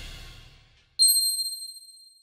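The end of a news-channel intro theme fading out, then a single bright chime sound effect about a second in, ringing high and dying away over about a second.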